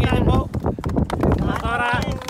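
Men's voices talking and calling out at the start and again near the end. Underneath runs a clatter of irregular knocks and a low rumble.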